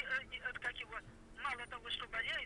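A person's voice heard over a telephone, talking in short broken phrases, thin-sounding with little low end.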